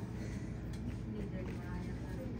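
Faint murmur of people talking in the room over a steady low hum.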